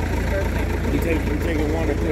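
A vehicle engine idling with a steady low rumble, under people talking in the background.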